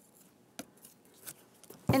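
Faint sound of a hand brayer being rolled through printing ink, with a few light clicks.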